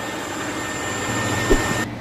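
Steady background noise with a faint high steady whine and, from about halfway, a low hum; a single short click about one and a half seconds in.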